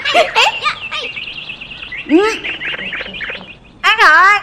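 Children's voices calling out and laughing, with birds chirping steadily in the background. One loud rising-and-falling call comes about two seconds in.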